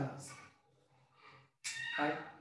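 A man's voice in short, drawn-out phrases with a brief pause between them: one phrase trails off in the first half-second, and another begins near the end.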